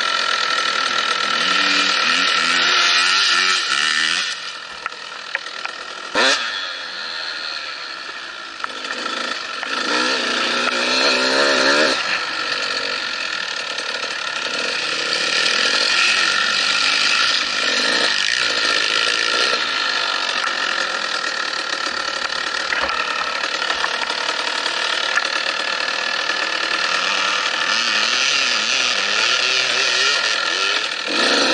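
Off-road dirt bike engine heard from on board while riding, revving up and down with the throttle, its pitch climbing and falling several times. It eases off and quietens for a few seconds near the start, with a sharp click about six seconds in.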